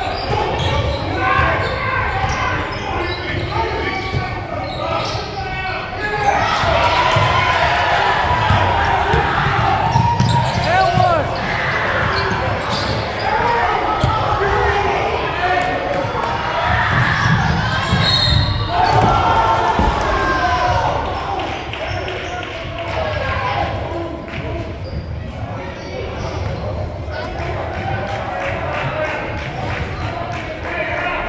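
Indoor basketball game sounds in a large, echoing gym: the ball bouncing on the hardwood floor, sneakers squeaking, and players and spectators calling out, loudest in the middle stretch of play.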